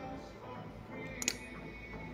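A switchblade-style folding comb snapping open with one sharp metallic click about a second in, over steady background music.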